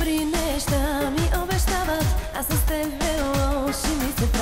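Chalga pop song: a woman's voice singing a wavering, ornamented melody with vibrato over a steady electronic kick-drum beat.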